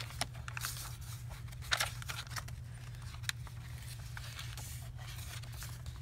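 Paper crinkling and rustling with small clicks as journal pieces are handled, mostly in the first half, over a steady low hum.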